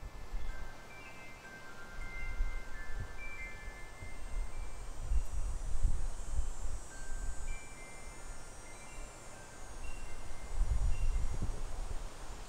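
Tubular metal wind chime ringing, its tones coming in scattered, overlapping strikes that thin out in the middle and return near the end. Under it, a low rumble swells and fades several times.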